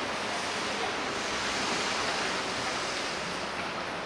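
Steady, even rushing noise of city street ambience, with no distinct events standing out.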